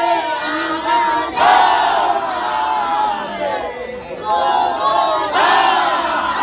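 Many men's voices chanting together in a Sufi dhikr, the voices overlapping in loud sung phrases. A new phrase starts about a second and a half in and another near the end, with a brief lull between.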